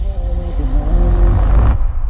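A loud deep rumble with a droning pitched tone that dips and shifts. It swells into a rushing peak that cuts off sharply near the end, leaving a fading tail.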